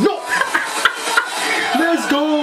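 A man's voice with a few short, sharp clicks in among it.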